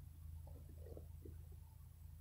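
Near silence: a steady low hum with a few faint, soft short sounds about half a second to a second in.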